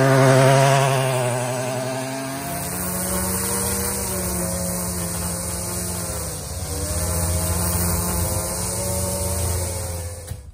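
Power lawn edger running steadily while it cuts a bed edge into sandy soil; its pitch wavers under load at first and drops about two and a half seconds in.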